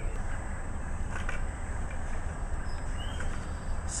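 Wind rumbling steadily on the microphone over a small fire of burning fatwood shavings, with a few faint crackles.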